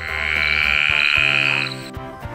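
A frog call sound effect: one sustained call lasting about a second and a half, then stopping, over light background music.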